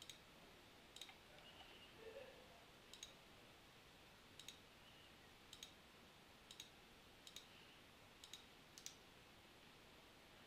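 Faint computer mouse clicks, about nine of them roughly a second apart, several as quick press-and-release doubles. The mouse is clicking point after point to carry a composite curve along a fragmented edge, which takes many clicks.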